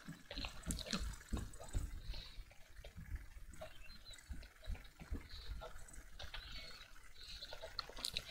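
Faint, irregular light taps and scratches of a pen stylus on a tablet during handwriting.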